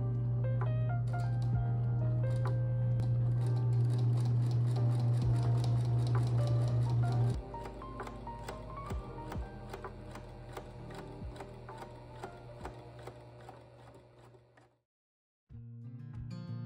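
Background music over an electric sewing machine running steadily for about the first seven seconds, then stopping. Near the end everything cuts out briefly.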